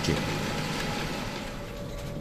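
Steady running noise of a John Deere tractor pulling a Krone BiG Pack HDP II large square baler at work, even and without a clear beat, fading slightly over the two seconds.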